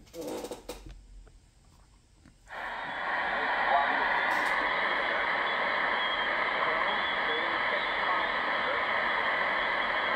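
A short clatter of handling, then about two and a half seconds in a Tecsun PL-680 shortwave receiver comes on, tuned to 12362 kHz upper sideband: a steady hiss of static with a faint voice of the marine weather broadcast under it.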